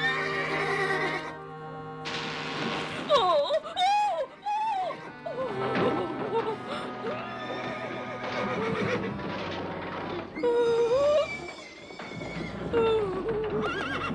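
Horses whinnying several times, with calls about three seconds in, near eleven seconds and near the end, over steady background music: cartoon horses fretting and pulling against the reins.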